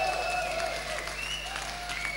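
Concert audience applauding at the end of a live rock song, with a few high, sliding tones over the clapping.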